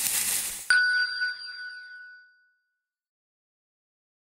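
Logo-reveal sound effect: a brief rushing swish that ends in a sudden bright bell-like ding, which rings out and fades over about two seconds.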